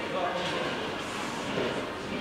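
Faint speech over a steady background hiss of room noise.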